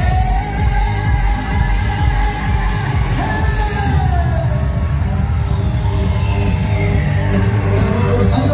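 Live trot song: a male singer singing into a microphone over loud amplified backing music with a heavy bass. He holds a long note near the start that slides down in pitch around the middle.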